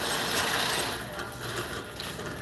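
Wire shopping cart rolling over a concrete store floor, its wheels and basket rattling; the rattle dies down about a second in.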